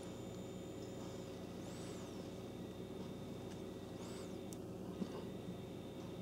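Quiet room tone: a steady low hum, with two faint high chirps about two and four seconds in and a small click near five seconds.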